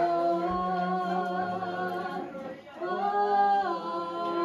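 A woman singing into a microphone, holding long notes, with a brief break before a new held note about three seconds in. A single low thump sounds about half a second in.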